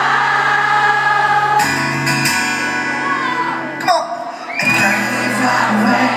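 Live pop-rock band playing through a hall PA: acoustic and electric guitars, bass and drums, with voices singing. The recording is loud and of poor quality. The music drops briefly about four seconds in before picking up again.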